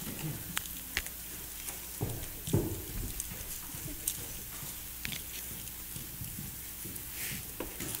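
Scattered footsteps, small knocks and rustling of people moving about in a church, at uneven intervals over a faint steady hiss.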